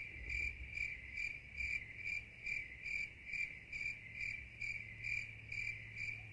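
A cricket chirping steadily at one pitch, about two chirps a second, over a faint low hum.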